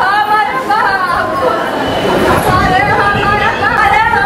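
A woman wailing and crying aloud in grief, her voice rising and falling in long drawn-out cries, over the chatter of people around her.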